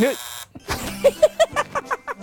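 An electronic buzzer tone cuts off abruptly about half a second in, under a short shout of "yey". It is followed by excited men's voices.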